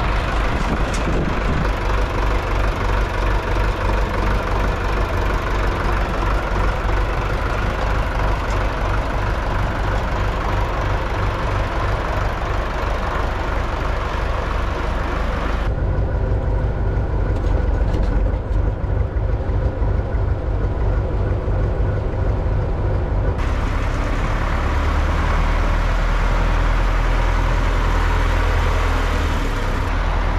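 YuMZ-6L tractor's four-cylinder diesel engine running steadily with an even low throb, sounding duller for several seconds midway and deeper and heavier in the last few seconds.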